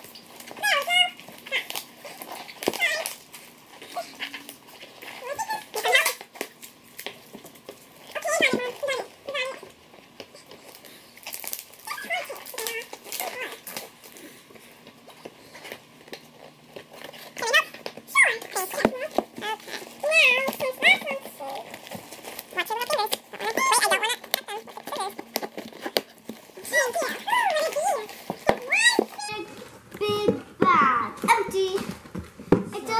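Young children's voices on and off, with hands scratching and picking at packing tape on a cardboard box and some crinkling.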